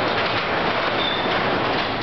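Sectional overhead garage door rolling down, its rollers rattling along the steel tracks as the panels close, with a brief high squeak about a second in.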